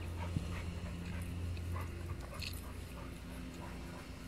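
A dog whimpering in short, scattered high squeaks, over a steady low hum.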